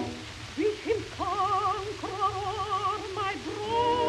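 Operatic soprano singing with a wide vibrato, accompanied by orchestra, on an early acoustic 78 rpm record with steady surface hiss. The music drops back briefly at the start before the sustained phrases resume.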